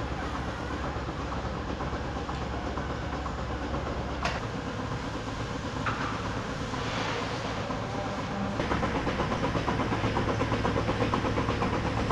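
Milking parlour machinery running: a steady low hum with the hiss and pulsing of milking units on the cows. A sharp click about four seconds in, and the pulsing grows a little louder over the last few seconds.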